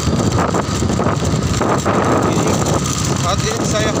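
Wind buffeting the microphone of a camera mounted on a moving motorcycle. The motorcycle's engine and the surrounding road traffic run steadily underneath.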